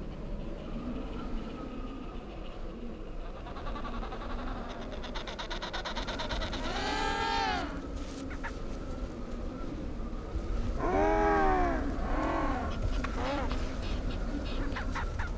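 Penguins calling: a loud honking call that rises and falls in pitch about halfway through, then two more in quick succession later, over a steady low rumble.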